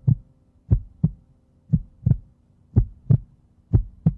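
Heartbeat sound effect: low double thumps, lub-dub, about one beat a second, over a faint steady hum.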